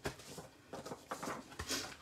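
A paper insert being pulled out of a clear plastic stamp case: a sharp plastic click at the start, then faint rustling and light ticks of paper sliding against plastic.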